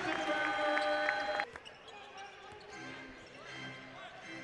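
Basketball court sound: a ball bouncing on the hardwood floor, with a held tone that stops abruptly about a second and a half in, after which the court sound is quieter.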